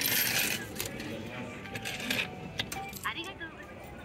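JRA racecourse payout machine paying out winnings: a short rattle of coins dropping into the tray at the start, followed by scattered metallic clinks.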